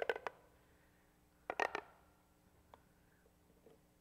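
Plastic pop-tube toy being stretched and bent, its ribbed sections giving a quick cluster of sharp pops and clicks about a second and a half in, with a few faint ticks afterwards.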